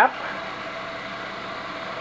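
Covington Engineering 16-inch vibrating lap running steadily, its motor humming while 60-grit carbide grinds under a glass honeycomb telescope mirror blank in the pan.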